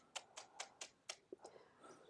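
Near silence, broken by a string of faint clicks, about four or five a second, that die away after a second and a half.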